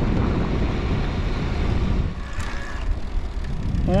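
Wind rushing over the microphone of a moving electric trike, a steady low rumble with road noise underneath.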